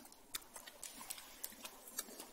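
Irish setter digging in forest soil with its front paws: quick, irregular scratches and scrapes of claws in earth and moss, several a second.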